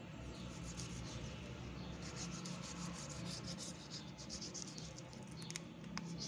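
A knife blade scraping and sawing at the joint of a slaughtered pig's foot, working through skin and tendon to take the trotter off: a faint rasping of many short strokes, thickest in the middle of the stretch.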